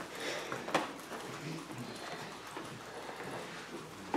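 Quiet room noise of a small gathering moving about: scattered knocks and shuffles with faint murmur, the sharpest knock about three-quarters of a second in.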